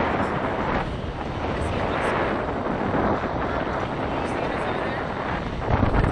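Wind rushing over the onboard camera microphone of a Slingshot ride capsule swinging high in the air, a steady buffeting that gusts louder with a deeper rumble near the end.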